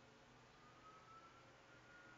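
Near silence: room tone with a low steady hum and a faint thin high tone that rises slightly.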